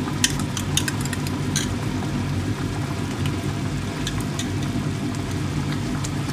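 A pot of soup at a rolling boil, with many small bubble pops and clicks over a steady low hum.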